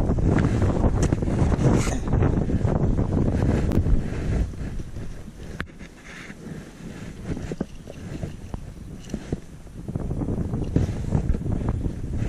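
Wind buffeting the microphone in a low rumble, heaviest in the first few seconds, easing off, then picking up again near the end. Faint scattered clicks and scrapes of loose soil being worked through by a gloved hand and a trowel come through beneath it.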